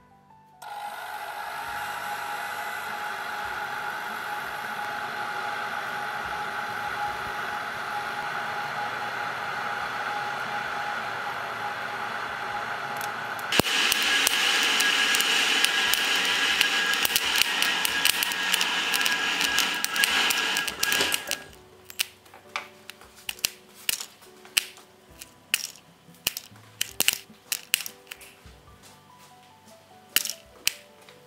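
Hot-air popcorn maker built from a hair dryer blowing steadily with a faint whine, stepping up louder partway through and then cutting off. After it stops come scattered sharp pops, typical of kernels popping.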